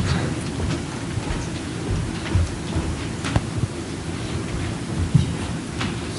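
Handling noise from a handheld microphone as it is carried across the room and passed to another person: a low, uneven rumble with a few sharp knocks.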